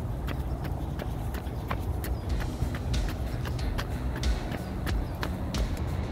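Running footsteps on an asphalt path, a steady beat of about three footfalls a second, over a low rumble of wind and handling on the microphone.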